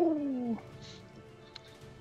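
A person's drawn-out "ooh", falling in pitch and stopping about half a second in, then faint steady background music.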